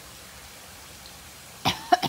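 Steady hiss of water spraying from a garden hose nozzle set to mist, then a person coughs twice near the end.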